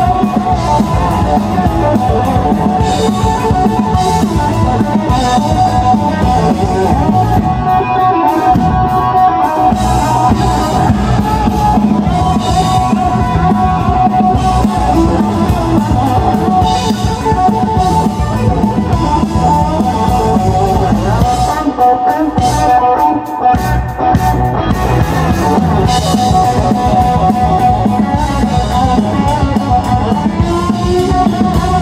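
Live rock band playing an instrumental passage: an electric guitar lead with long held notes over bass guitar and drum kit. The bass and drums drop away briefly about two-thirds of the way through, then come back in.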